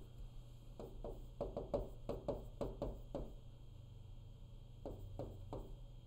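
Stylus tapping and knocking against a touchscreen board while writing: a quick run of light knocks in the first half, then three more near the end, over a low steady hum.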